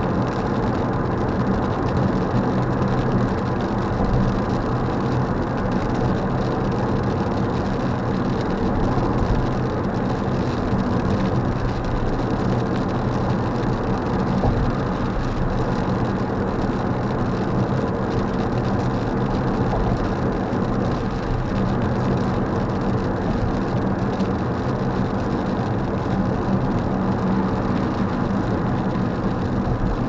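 Steady in-cabin road noise of a car cruising at highway speed on a wet expressway: tyre noise on the wet surface with a constant low engine and drivetrain hum.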